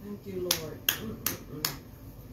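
Four sharp, evenly spaced clicks, about two and a half a second, over faint low voices.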